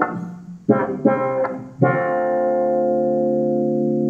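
Electric guitar playing clean chords: a chord fading at first, fresh chords struck about two-thirds of a second and a second in, then a chord near two seconds in that rings out steadily.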